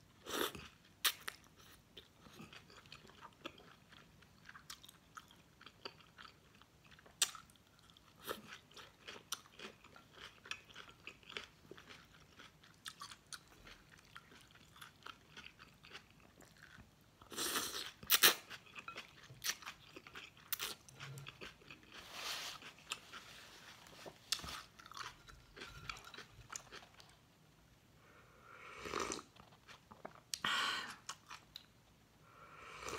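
Close-miked chewing and wet mouth clicks from eating pho rice noodles, with longer noisy slurps about halfway through, a few seconds later, and again near the end.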